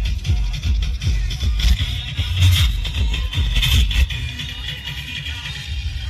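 Loud electronic dance music blasting from a truck-mounted DJ speaker stack, dominated by heavy pulsing bass from its large bass woofers.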